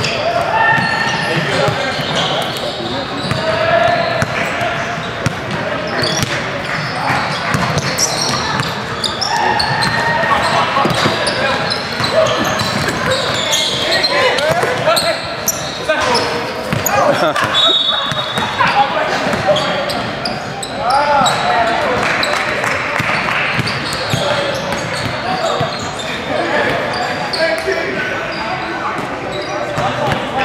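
Basketballs bouncing on a hardwood gym floor during play, mixed with players' voices and calls, all echoing in a large hall.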